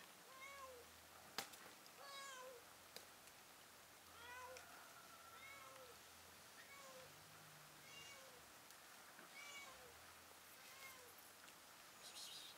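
Grey domestic cat meowing faintly and repeatedly, about nine short meows, each bending down in pitch at its end. A couple of sharp clicks come in the first few seconds.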